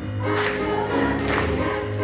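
Middle-school choir singing sustained chords, with piano accompaniment; new chords come in roughly once a second.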